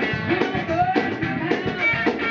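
A live gospel band playing: electric lead guitar, keyboard and a drum kit keeping a steady beat, with a woman singing into a microphone over them.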